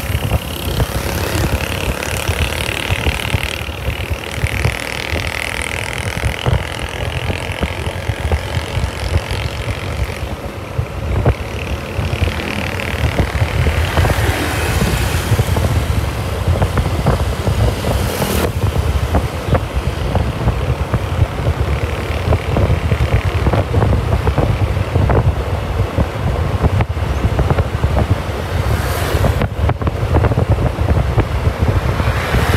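Wind buffeting the microphone of a Yamaha motor scooter riding at about 40 km/h, with the scooter's engine and road noise steady underneath.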